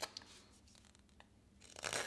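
A carving knife slicing into a basswood block: a few faint ticks, then one scraping cut near the end as a shaving comes off.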